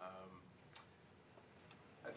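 Near silence: room tone, with a brief faint voice at the start and two faint clicks about a second apart.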